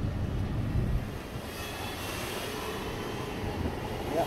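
Steady vehicle rumble with hiss. The low rumble is heavy for the first second or so, then eases, and a brighter, even hiss carries on.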